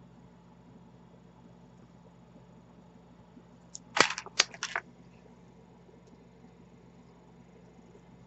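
Beads clicking against each other and the tray as they are handled: a quick run of about half a dozen sharp clicks over about a second, near the middle. Otherwise only faint room tone.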